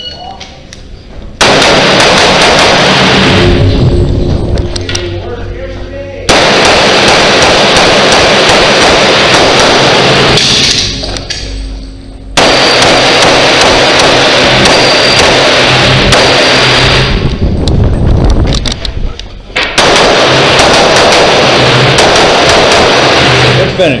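Pistol gunfire on an indoor range: many shots in several long strings separated by brief lulls, loud and echoing, overloading the camera microphone.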